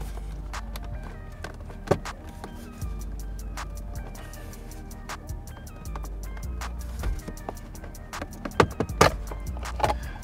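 Background music with a steady bass line, with a few sharp clicks, the loudest about two seconds in and just before the end.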